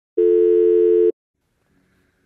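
Telephone call tone: one steady, low electronic tone lasting about a second, then cut off abruptly, as a phone call is placed.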